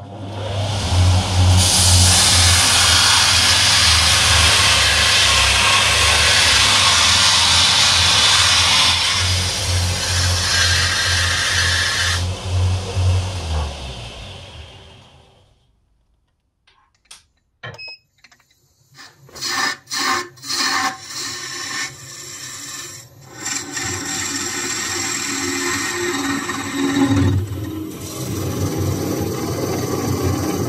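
Shop-made belt grinder running, with a steady low hum and a dense grinding hiss as steel is held to the abrasive belt; the grinding stops and the machine winds down to silence after about fifteen seconds. After a pause, a run of sharp clicks and knocks, then a machine running steadily again.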